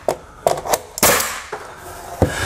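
Pneumatic Ridgid finish nailer firing nails into crown molding: four sharp shots in about a second.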